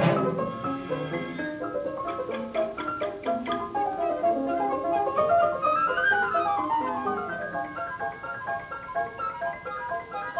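Piano and orchestra playing a fast passage of quick, short notes, from an old 1937 recording. Around the middle a run climbs and then falls back down.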